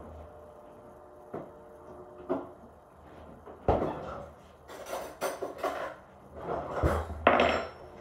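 Kitchen handling noise: cutlery and dishes clinking and knocking. There are a few separate knocks, the loudest about four seconds in, then a busier run of clinks and clatters over the next few seconds.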